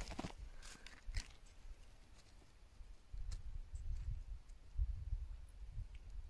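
Quiet rustling and soft crunching of a person shifting about in snow, with a few small clicks and a low rumble of wind on the microphone.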